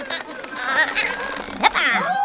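A cartoon character's high-pitched wordless vocal sounds, then a sharp crack and a quick falling whoosh near the end.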